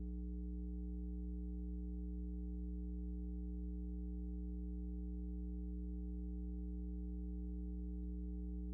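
Steady low electrical hum with a stack of even overtones, unchanging throughout: mains hum picked up by the recording's audio chain.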